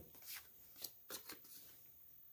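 Faint rustles and light taps of a hand handling a stiff note flash card on carpet: a few short scrapes in the first second and a half.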